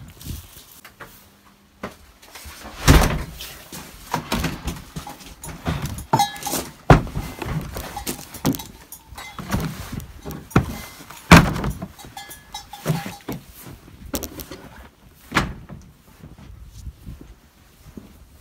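Boots stepping through deep snow: irregular crunching footsteps, with heavier thuds every few seconds.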